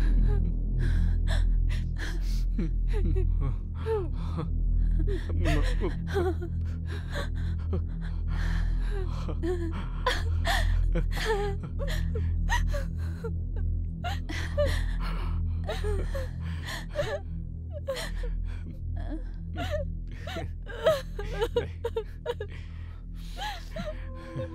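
Crying with repeated gasping sobs and whimpers, over a low, steady musical drone.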